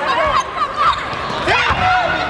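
Indoor volleyball rally: hand-on-ball contacts and players' shoes on the court, heard among overlapping shouts from players and spectators.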